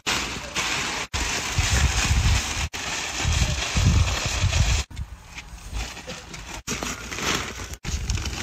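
Plastic sheeting rustling and crinkling as it is handled and pulled, with wind buffeting the microphone in low rumbles. The sound breaks off abruptly several times.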